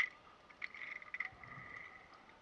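Zip-line trolley running along the steel cable: a steady high whirring whine with scattered clicks and rattles, and a sharp click right at the start.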